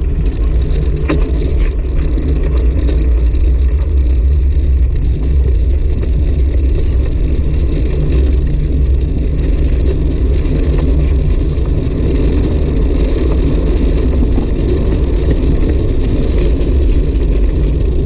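Steady wind rush and low rumble on a handlebar-mounted camera's microphone while a road bicycle rolls along rough asphalt, with tyre and road noise underneath and a few faint clicks.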